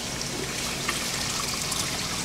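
Water trickling steadily into an aquaponics fish tank from a PVC pipe at the surface, with a few faint drips.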